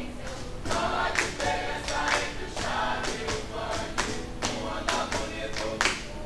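Mixed youth choir singing together, punctuated by sharp hand claps about twice a second.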